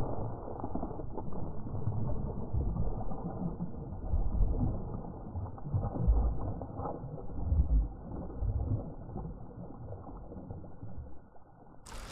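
A hooked pickerel thrashing at the water's surface: an irregular run of dull, muffled splashes, loudest in surges about four, six and seven and a half seconds in.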